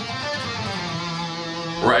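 Schecter Hellraiser C1 electric guitar playing the last notes of a minor-scale run in second position, the final note held and ringing from about half a second in.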